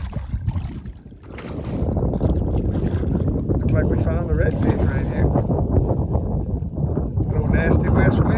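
Wind buffeting the phone's microphone: a steady low rumble that sets in about a second in, with a few brief bits of speech over it.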